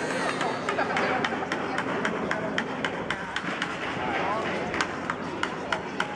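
Footsteps on cobbled paving, about two a second, under the murmur of people talking around market stalls.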